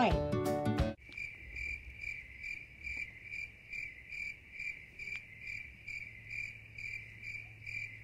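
Music and a voice stop about a second in, then crickets chirp steadily, about three chirps a second.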